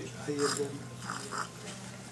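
Indistinct conversational speech in short snatches, over a steady low hum.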